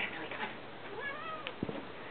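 A domestic cat gives one short meow, falling in pitch, about a second in, followed by a couple of soft knocks.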